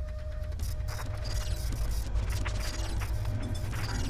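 TV programme ident sound design: a steady deep rumble with scattered mechanical clicks and ratcheting, the sound effect of a seismograph pen scratching out its trace.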